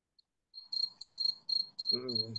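A cricket chirping: a high, pulsing chirp that starts about half a second in. It is heard faintly through a video-call microphone, and a man's voice begins near the end.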